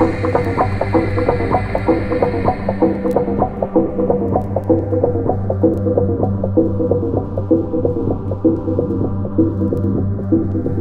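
Electronic house music: a quick repeating percussive pattern over a steady droning bass. The treble is filtered away over the first few seconds, leaving the rhythm muffled.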